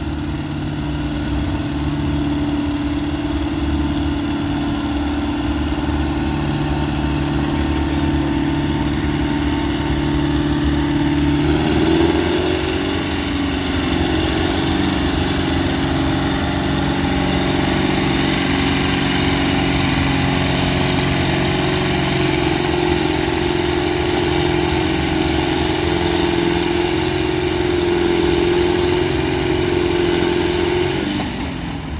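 Ford farm tractor's engine working hard under load as it drags a weight-transfer pulling sled down the track, a steady loud drone. Its pitch steps up a little about twelve seconds in and then holds.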